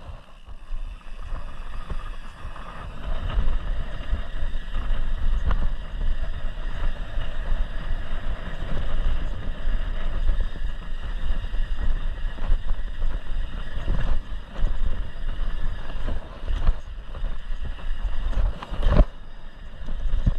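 Mountain bike rolling fast down a dirt trail: wind buffeting the camera microphone over a steady rumble of tyres on dirt, with the bike rattling over bumps and a sharp knock about a second before the end.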